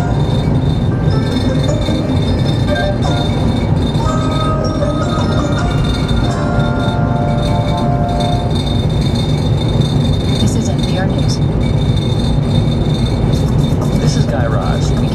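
Radio music interlude with mallet-percussion notes, heard over a car's steady road and engine noise on a highway.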